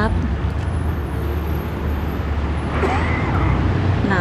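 Steady low rumble of street traffic, with a faint voice about three seconds in.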